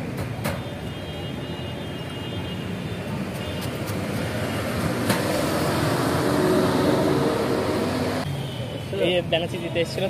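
City street traffic: a noisy road haze that swells as a large vehicle passes close by, then drops off suddenly, with a few sharp clicks along the way and voices near the end.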